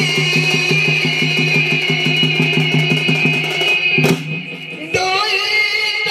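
Amplified live Odia folk music: singing held over a fast, even drum beat. The music breaks off with a hit about four seconds in, and after a short gap the singing starts again.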